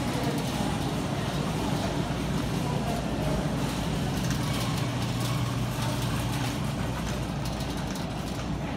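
Supermarket background noise: a steady low hum under an even wash of room noise.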